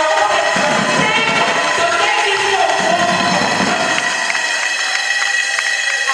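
A woman singing a worship song into a microphone, with a congregation singing and calling out along with her. A few sharp claps sound in the second half.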